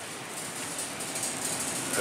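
Steady supermarket background noise with a shopping cart being pushed along.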